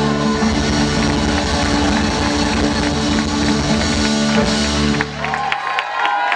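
Live rock band of electric guitar, bass and drum kit holding a loud final chord over rapid drum and cymbal strokes, cutting off about five seconds in as the audience starts to applaud.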